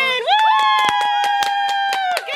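A girl's long, high-pitched cheering scream, held at one pitch for nearly two seconds, with quick hand clapping over it at about seven claps a second.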